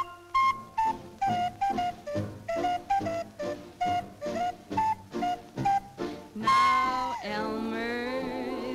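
Clarinet solo in a swing band arrangement: a run of short detached notes, about three a second, then near the end a long held note with vibrato that bends downward.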